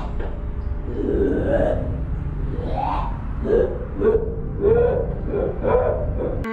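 Drawn-out, wavering voice-like wails, one after another and rising and falling in pitch, over a steady deep rumble.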